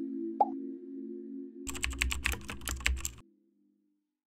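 Animated-outro sound effects over a held ambient music drone: a single plop about half a second in, then a quick run of about ten keyboard-like clicks with a low thud under them for about a second and a half. Everything then cuts off to silence.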